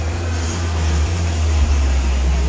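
Steady, loud low rumble, like air or handling noise on a phone microphone, over a haze of crowd chatter in a large hall.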